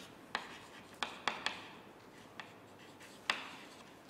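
Chalk writing on a blackboard: a series of sharp, irregular taps as the chalk strikes the board, over a faint scratch.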